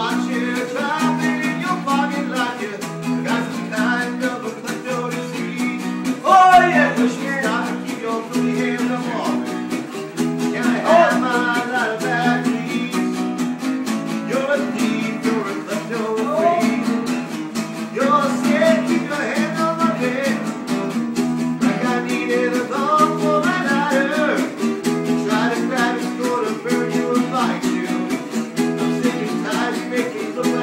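Acoustic guitar strummed steadily as accompaniment, with a voice singing a song over it. The singing is loudest about six and eleven seconds in.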